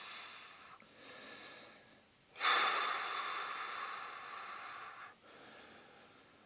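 A man breathing out heavily: a faint breath at first, then one long exhale starting about two and a half seconds in and fading away over some three seconds. It is the breath of someone still shaken, his heart pounding after a scare.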